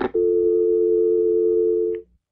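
A telephone line's click, then a steady, unbroken dial tone after the caller hangs up at the end of an answering-machine message. The tone cuts off suddenly at the end.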